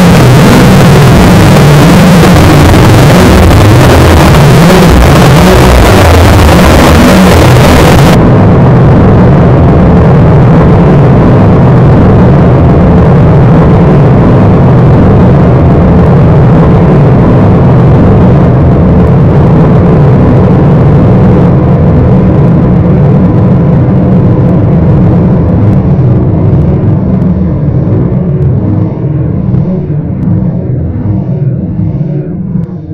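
Harsh noise / power electronics: a wall of loud, dense distorted noise. About eight seconds in, the top end cuts out abruptly, leaving a heavy low distorted mass with faint steady tones that thins and wavers a little lower near the end.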